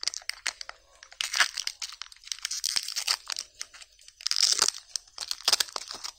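Foil seal being peeled off a plastic Kinder Joy egg half: crackling and crinkling in several irregular bursts as the lid tears away.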